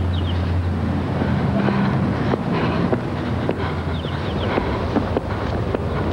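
Outdoor street sound: a steady low rumble of traffic, with scattered light knocks and a few brief high chirps.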